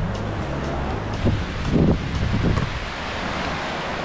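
Wind buffeting the microphone over the wash of small ocean waves breaking on the shore, with a few louder gusts in the middle.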